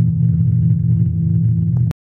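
Electric guitar's final low note ringing on through effects, steady and slightly wavering, then cut off suddenly with a click near the end.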